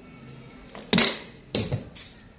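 Two sharp knocks with echo off bare concrete walls, about two thirds of a second apart, the first the louder: a ball bouncing and being struck by a cricket bat.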